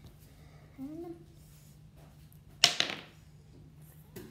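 A game die tossed onto the table, landing with one sharp clatter about two and a half seconds in.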